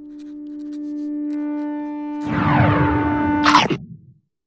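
Logo sting sound design: a held synth-like tone swells for about two seconds. Then a dense noisy sweep with many falling pitches comes in, ending in a sharp bright hit at about three and a half seconds that cuts off quickly.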